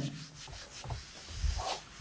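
Handheld whiteboard eraser rubbing across a whiteboard, wiping off marker writing.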